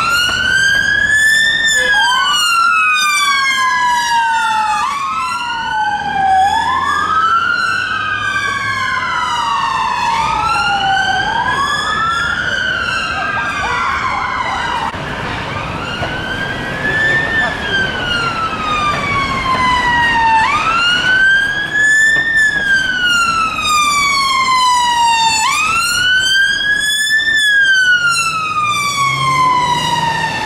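Ambulance siren on a wail, each cycle a quick rise and then a slow fall lasting about five seconds. Through much of the middle a second emergency siren wails out of step with it, the two sweeps crossing. Low traffic rumble underneath.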